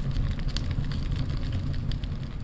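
Added fire sound effect: flames burning with a steady low rumble and scattered small crackles.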